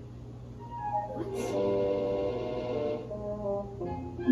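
Cartoon soundtrack music playing from a TV speaker: held notes come in about a second in and fade near the end, with a short sharp sound about a second and a half in.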